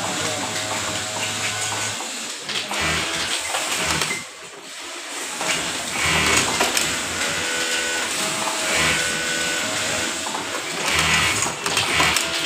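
Brother industrial lockstitch sewing machine stitching fabric in repeated short runs, starting and stopping as the cloth is guided under the needle, with a brief pause about four seconds in.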